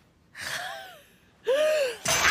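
Two short, voiced gasps, each rising and then falling in pitch, the second louder than the first.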